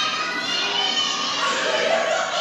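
Many young children's voices shouting and calling out at once, the crowd sound of a sparring bout between five-year-old taekwondo kids, played back over loudspeakers into a large room.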